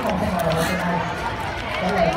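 Chatter of people's voices, children's among them, on a crowded outdoor walkway.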